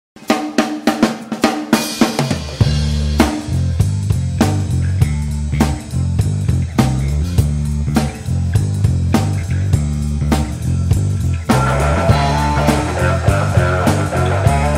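A live rock band starting a song. A drum kit plays alone for about two seconds, then a bass guitar comes in with a steady groove under the drums, and guitars join near the end.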